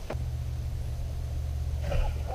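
A steady low rumble, like a motor running, sets in at the very start and holds an even level.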